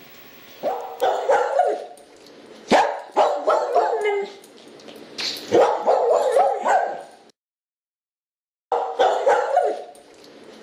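A dog barking repeatedly in quick runs of sharp barks and yips. The sound cuts out completely for about a second and a half roughly seven seconds in, then the barking resumes.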